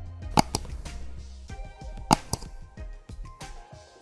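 Background music with two sharp click sound effects, about half a second in and again about two seconds in, from an animated subscribe button being clicked.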